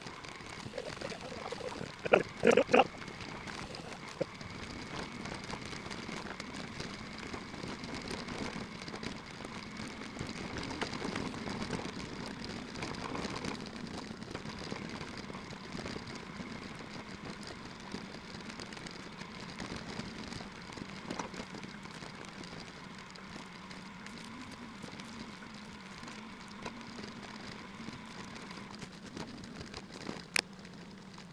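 Steady riding noise from an electric bicycle on a grassy track: a continuous hum with faint steady tones. Three short, loud sounds come about two seconds in.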